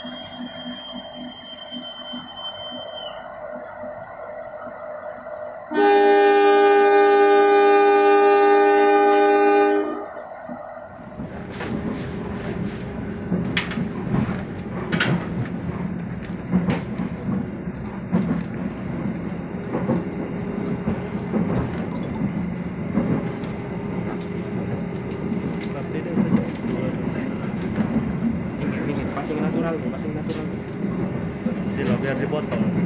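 A diesel locomotive's horn sounds one loud, steady blast of several pitches together for about four seconds, signalling the train's departure. It follows a long, high, steady whistle at the start. From about 11 seconds in comes the low rumble of a passenger coach rolling on the rails, with scattered clicks and knocks.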